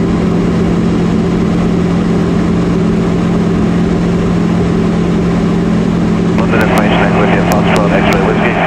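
The engine and propeller of a Sport Cruiser light aircraft in cruise, a steady loud drone with a strong low hum, heard inside the cabin. The aircraft is powered by a four-cylinder Rotax 912.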